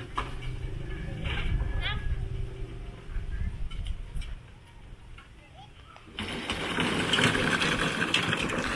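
Faint voices of workers talking over a low, steady rumble. About six seconds in, a loud hissing noise sets in suddenly.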